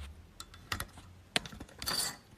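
Phone handling noise: irregular sharp clicks and rubbing as a smartphone is moved against clothing, thickening into a cluster near the end.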